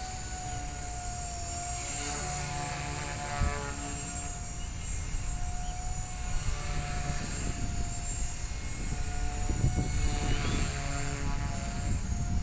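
Blade 180 CFX micro RC helicopter flying overhead, its six-pole 5800kv 3S electric motor and rotor blades giving a steady whine that wavers slightly in pitch.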